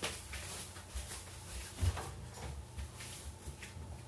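Footsteps and light knocks going away from the room as a person walks out, with a stronger thump about two seconds in.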